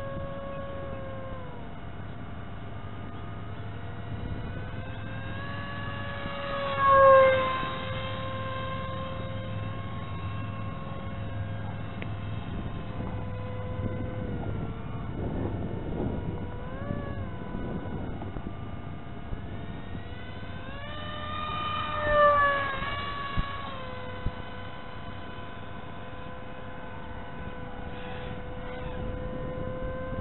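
Onboard sound of a 2205 2300Kv brushless motor spinning a 5045 two-blade propeller in flight: a steady whine with overtones. Twice, about seven seconds in and again about twenty-two seconds in, it swells louder and higher in pitch for a second or so as the motor speeds up.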